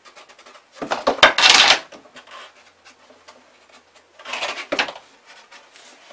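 Cardboard being handled, folded and marked with a pen: two rustling, scraping bursts about a second long, the louder one near the start and a shorter one just past the middle, with light scratching between.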